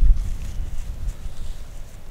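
Wind rumbling on the microphone, a low buffeting that is strongest at the start and eases off.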